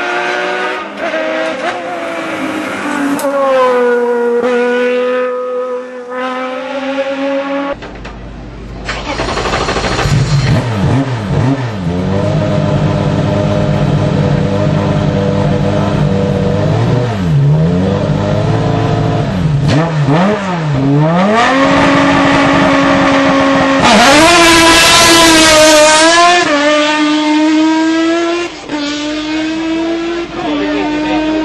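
Open-cockpit sports prototype race cars at hillclimb pace: an engine at full throttle climbing through the gears. Then an engine at low revs with quick throttle blips that dip and recover in pitch. Then a high-revving engine accelerating hard, loudest about two-thirds of the way through.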